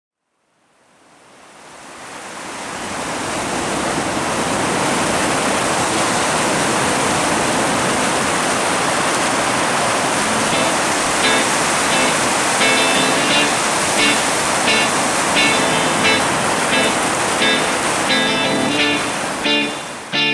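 A steady rushing noise wash fades in over the first few seconds and holds loud. From about halfway, short repeated pitched notes emerge from it and grow busier toward the end, leading into amplified music.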